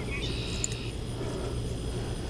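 Outdoor background with a steady low rumble. About a quarter-second in, a short high insect trill lasts just over half a second.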